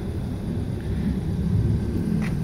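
Steady low rumble of outdoor background noise, with no clear single event.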